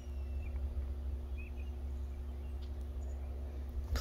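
Outdoor background: a steady low rumble with a faint hum, and a few faint, short bird chirps.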